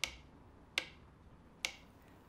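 A metronome ticking slowly and evenly, about one sharp click every 0.8 seconds, three ticks in all. It is the steady rhythm used to lead a hypnotic trance.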